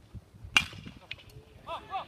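A baseball bat striking a pitched ball: one sharp crack about half a second in. Spectators start shouting near the end.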